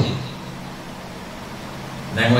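Steady low hum in a short pause between a man's spoken phrases.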